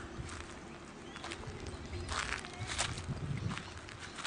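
Irregular footsteps on dry leaf litter, with a low rumble beneath.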